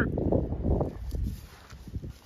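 Low rumble of wind and handling noise on an outdoor phone microphone, dying away after about a second and a half.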